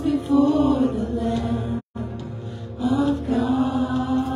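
Worship song led by a man and a woman singing into microphones over a steady sustained accompaniment. The sound cuts out completely for an instant about two seconds in.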